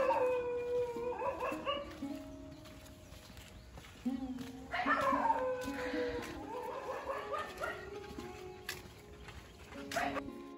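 A dog howling twice: two long, drawn-out howls that slide down in pitch, the second starting about five seconds in. Background music plays underneath.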